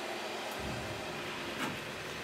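Hinged lid of a benchtop evaporator being swung down and shut, with a soft click about one and a half seconds in, over a steady background hiss.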